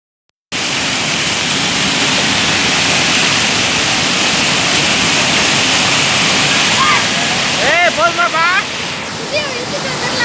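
Waterfall pouring heavily onto rock and into a plunge pool, a loud, steady rush that starts about half a second in. From about seven seconds in, voices call out over it in short rising-and-falling shouts.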